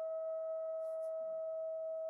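A steady, high pitched tone with fainter overtones, holding one pitch throughout, with two faint ticks about a second in.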